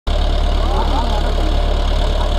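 Massey Ferguson 375 tractor's diesel engine running steadily with an even low rumble as it pulls a disc plough through the soil.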